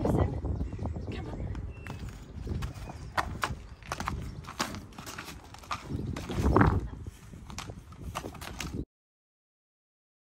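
A horse's hooves stepping on gravel, irregular hoof falls as it walks up to a trailer ramp, over a low rumble. The sound cuts off suddenly near the end.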